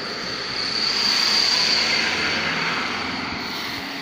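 A van driving past close by on the road: its engine and tyre noise swell to a peak about a second and a half in, then fade away.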